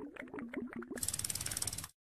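Ratchet-like clicking sound effect from an animated text transition. It starts as a short string of ticks over a low, stepping tone, then turns into a faster, brighter run of even clicks, about fifteen a second, that stops abruptly just before the end.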